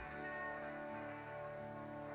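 Rock band with a horn section playing long held chords, with a change in the low notes about a second in.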